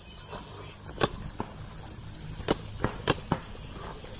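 Paintball marker firing single shots in a snap-shooting drill: one sharp pop about a second in, then a quick string of four pops near the end.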